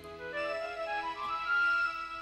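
Background music: a slow melody of held notes stepping upward in pitch to a sustained high note.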